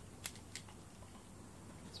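Faint handling clicks of a small plastic paint bottle held over a plastic mixing cup: two light ticks within the first second, then only a low, quiet room hum.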